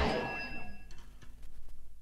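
Final chord of a heavy metal song dying away, its ringing fading out over the first second, leaving only a few faint ticks at the end of the track.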